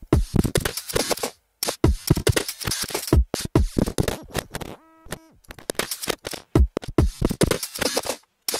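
A 140 BPM drum loop played through Bitwig Studio's Delay+ effect, its delay time modulated by a curve so the beat is chopped into stuttering, glitchy fragments with short gaps. The glitch changes character as the device's update rate is changed. About five seconds in, a brief buzzy pitched tone sounds.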